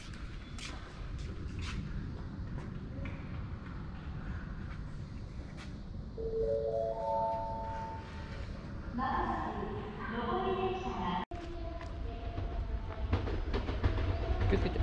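A station public-address chime of four short notes stepping upward, followed by a voice announcement over the platform speakers, with a steady low rumble underneath. The rumble grows louder near the end.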